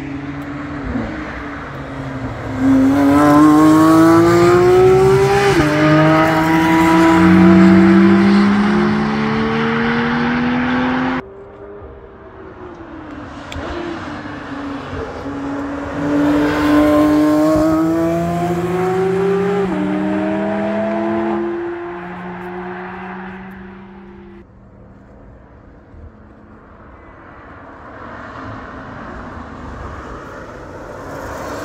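Sports cars accelerating hard out of a corner one after another, each engine climbing in pitch and stepping down at upshifts. Two loud passes, the first cutting off abruptly about eleven seconds in, then quieter engine sound from cars further off near the end.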